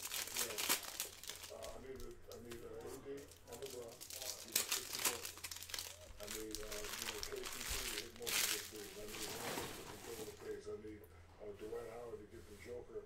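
A stack of Bowman Chrome trading cards being riffled, flicked and squared up by hand: repeated sharp card clicks and crinkling handling noise, busiest in the first half and again around the eighth second.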